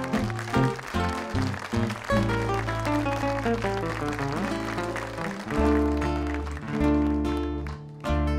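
A bolero played on acoustic guitars: plucked melody notes over long held bass notes.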